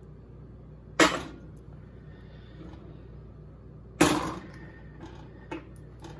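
Two sharp knocks about three seconds apart, from bottles and a metal measuring spoon being handled and set down, each trailing off quickly, over a low steady hum.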